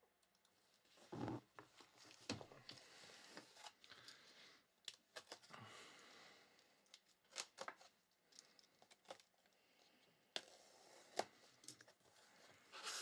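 Panini cardboard shipping case being cut along its taped seam and pulled open: faint scraping and tearing of cardboard and packing tape, with a few sharp clicks near the end.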